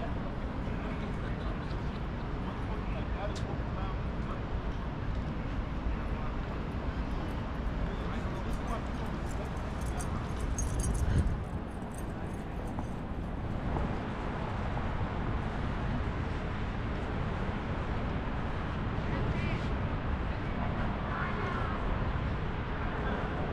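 City street ambience: steady traffic rumble with passers-by talking, and a brief louder swell about halfway through.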